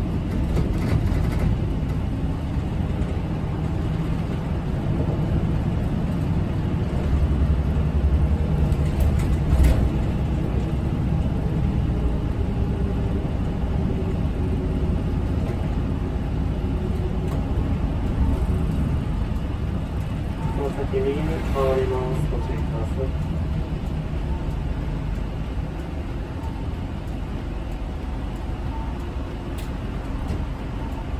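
City bus running along the road, heard from inside the cabin near the driver: a steady low engine and road rumble, with a brief wavering pitched sound about two-thirds of the way through.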